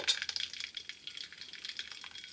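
Faint sizzling and crackling of food cooking in a hot pan.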